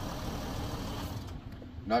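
Mercedes Sprinter 3.0-litre diesel idling steadily with the door open. About a second and a quarter in, much of the running sound drops away and it goes quieter.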